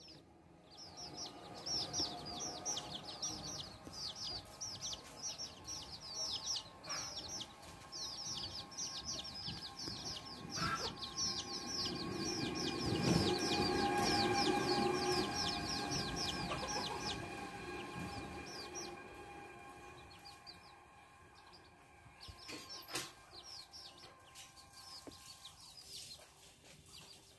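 Small birds chirping in rapid runs of short, falling high notes, several a second, which stop about two-thirds of the way through, over steadier lower calls. A low rushing sound swells and fades in the middle.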